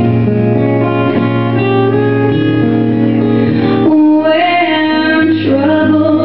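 Live ballad performance: guitar-led accompaniment holding chords, with a female vocalist coming in about four seconds in and singing held notes with vibrato.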